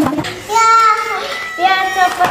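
A high, child-like voice singing or calling out in long drawn-out notes: one held note about half a second in, then another starting near the end.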